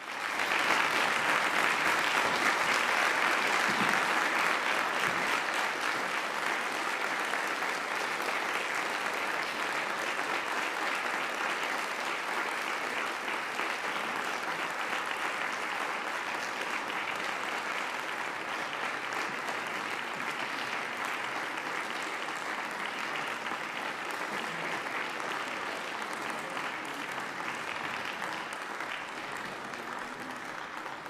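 Sustained applause from many people clapping. It is loudest in the first few seconds and slowly tapers off.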